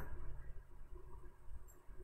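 Quiet room tone with a faint steady low hum, and one small faint tick near the end.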